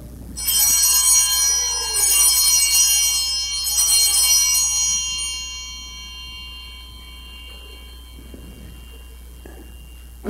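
Altar bells (Sanctus bells) rung three times at the elevation of the chalice after the consecration, a cluster of high ringing tones that die away over several seconds.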